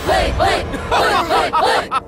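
A crowd of cartoon minion voices chanting "hei, hei, hei" ("black, black, black") in unison, the same short syllable repeated in a quick, even rhythm.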